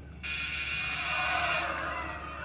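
Game-show wrong-answer buzzer sounding once, a steady harsh buzz of about a second and a half that starts just after the pick: the called digit is wrong and the car's price goes up.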